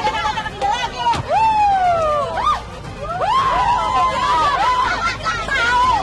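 A group of women shouting and yelling over one another in loud, high-pitched overlapping cries.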